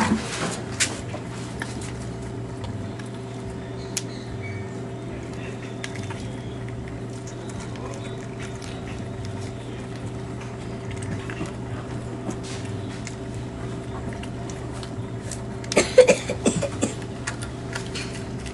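A knife and hands gutting a fresh tilapia: scattered clicks and wet handling sounds, with a louder cluster of knocks and scrapes about sixteen seconds in, over a steady hum.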